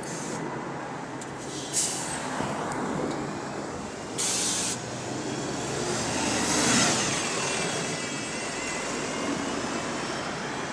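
Double-decker bus pulling away from a stop and passing close by: a short, sharp hiss of air from its air system about four seconds in, then the engine rising to its loudest as it goes past, with road traffic behind.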